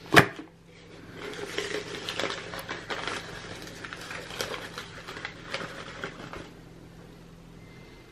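Packing paper rustling and crinkling as a glass is unwrapped by hand, with a sharp knock at the very start. The crinkling dies away about six and a half seconds in.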